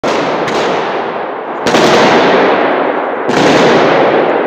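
Bursts of automatic gunfire echoing through a large indoor hall, a dense continuous rattle with fresh loud bursts breaking in about half a second, one and a half seconds and three and a quarter seconds in.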